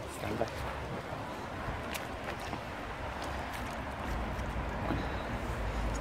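Quiet, steady outdoor background noise with a few faint clicks about two seconds in, and a low rumble that strengthens from about four seconds in.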